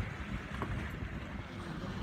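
Wind rumbling on the microphone over the wash of water along a sailboat's hull while under way.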